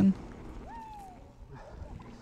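Mountain bike riding a pumptrack: a steady rush of wind and tyre noise on the handlebar camera's microphone. Just under a second in comes a short whine that rises and then falls.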